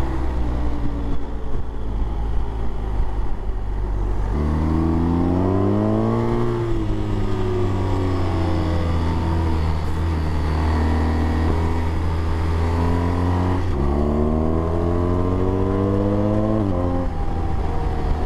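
Large adventure motorcycle engine heard from the bike while riding, with rushing wind. The revs step up about four seconds in and climb under throttle, ease off, step up again near fourteen seconds and drop at a gear change near the end.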